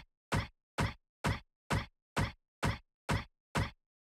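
A sharp hit struck eight times at an even beat of about two a second, each dying away quickly, with dead silence between the strikes.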